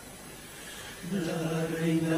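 A male carnival comparsa chorus singing: after a short pause, the voices come in about a second in on a long held note that swells in loudness.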